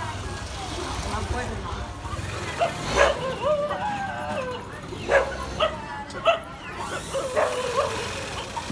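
A dog barking: a series of short, sharp barks and yips starting about two and a half seconds in, with people's voices between them.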